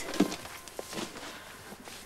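A few soft, irregular footsteps and light knocks of someone walking across a floor, fading toward the end.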